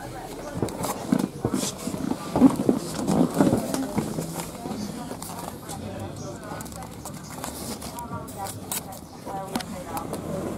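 Indistinct voices of people talking nearby, loudest in the first few seconds, with scattered short clicks and knocks, more of them near the end.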